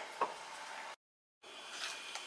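Quiet room tone with one faint click about a quarter second in, then a half-second dropout to dead silence before the faint hiss returns.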